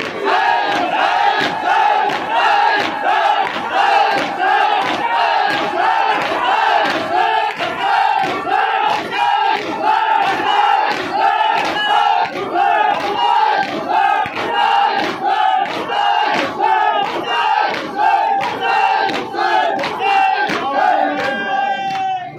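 A crowd of men chanting a noha in unison while beating their chests in matam. The open-handed chest strikes land together in a steady rhythm of about one and a half beats a second.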